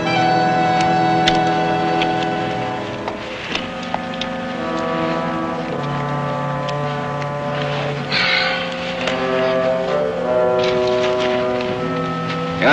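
Orchestral film score playing slow, sustained chords, with long held low notes that move to a new chord every couple of seconds.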